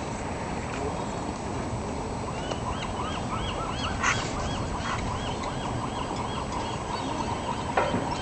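Sea lions barking in a quick, even series of about three barks a second, starting a second or two in, over steady background noise. A brief knock sounds about halfway through.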